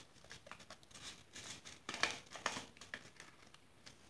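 Faint crinkling and rustling of a packet being handled, with a few light clicks, the loudest about two seconds in.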